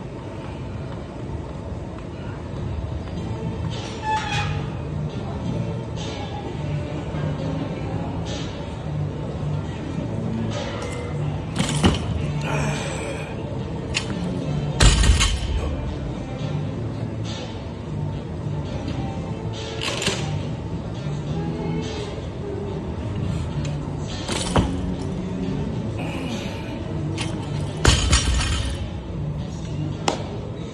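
Background music over gym room sound, broken by two heavy, deep thuds about halfway through and again near the end: a loaded barbell with rubber bumper plates dropped onto the lifting platform after each snatch. A few lighter, sharp clanks of the bar come in between.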